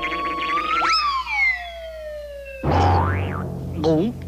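Cartoon sound effects over background music: a whistle that swoops up sharply about a second in, then glides slowly down in pitch, followed by a boing about three seconds in.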